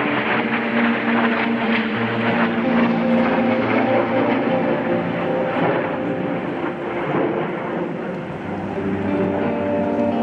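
Two jets flying overhead, a broad rushing noise that is loudest in the first few seconds and eases off toward the end, with background music underneath.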